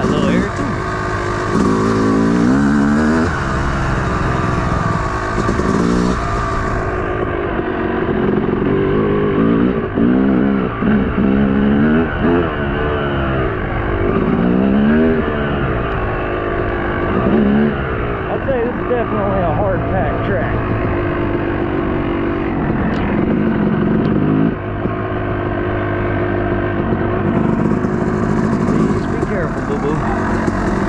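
Dirt bike engine being ridden hard: its pitch climbs and drops back over and over as the throttle is opened and shut.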